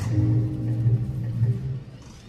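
Background music with sustained low notes, dropping away near the end.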